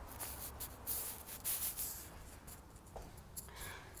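Short bursts of rustling and rubbing, most of them in the first two seconds and quieter after that: the handheld phone being handled and brushed while it is carried through the rooms. A faint steady low hum runs underneath.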